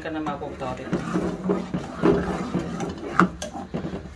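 Steel ladle stirring milk in an aluminium saucepan, with light scrapes and one sharp clink against the pot about three seconds in. Voices talk in the background.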